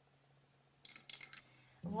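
A brief clatter of light, sharp clicks lasting about half a second, from the aluminium pudding pan being handled and lifted off the table.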